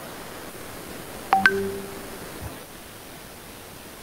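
A brief electronic tone about a second and a half in: a sharp start and a couple of short pitched notes, over a steady low hiss.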